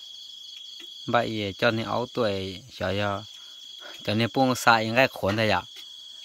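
A steady, high-pitched trill of night insects that runs without a break, with a woman's voice talking loudly over it in two stretches.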